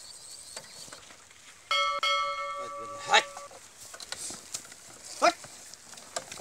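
A single bell-like ring of several tones starts suddenly about two seconds in and fades out over the next second and a half. Two short, sharp sounds come later and are the loudest moments.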